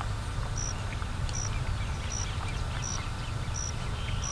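Summer marsh ambience: a short, high-pitched call repeats evenly about every three-quarters of a second over a steady low rumble.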